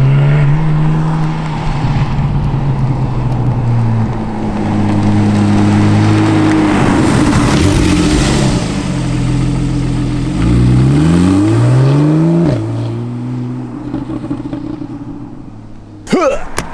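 Porsche 911 Carrera GTS's naturally aspirated flat-six engine running loudly as the car drives along, holding a steady note through the first half with a rush of passing noise around the middle. About two-thirds in the revs climb in a rising sweep and drop abruptly at a gear change, then settle to a lower steady note.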